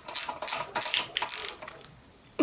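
Socket ratchet wrench clicking in a quick run of strokes, turning a bolt at the bottom of a motorcycle's front fork by the axle. The clicking stops about one and a half seconds in.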